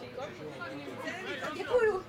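Indistinct talk of several people, with a louder voice near the end.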